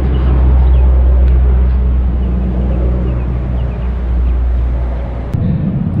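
Airplane flying overhead, a loud steady low drone that drops away about five seconds in.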